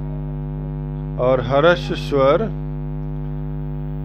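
Steady electrical mains hum, a constant low buzz with a stack of steady tones, loud enough to sit level with the voice; a man's voice says a short word twice between about one and two and a half seconds in.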